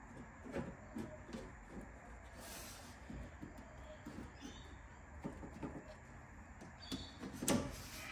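Scattered light knocks and taps as an aftermarket wiper filler panel is pushed and worked into place along the base of a car windscreen, with a brief rustle about two and a half seconds in and a louder knock near the end. The panel is a tight fit against the rubber seal.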